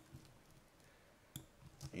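Two faint computer mouse clicks about one and a half seconds in; otherwise near silence.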